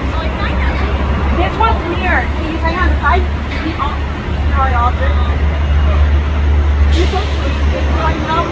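Steady low rumble of an idling vehicle engine and curbside traffic under indistinct talking, with a brief hiss about seven seconds in.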